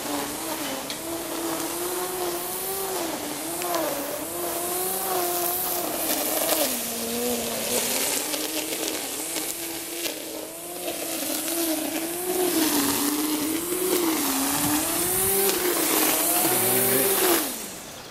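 Small two-stroke engine of a brush cutter (grass trimmer) running, its pitch wavering up and down as the throttle is worked, over a steady high hiss; it cuts off shortly before the end.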